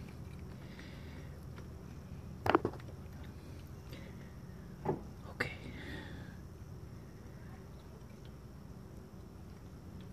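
A few light clicks and taps from hands handling a brass coolant temperature sensor at its engine port: a pair of clicks about two and a half seconds in and a couple more around five seconds. Under them runs a steady low hum.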